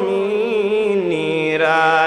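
A man's voice singing a Bengali Islamic devotional song (gojol) into a microphone. He holds a long, slightly wavering note that steps down to a lower pitch about halfway through.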